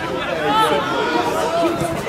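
Sideline chatter at a football match: several voices talking and calling out over one another.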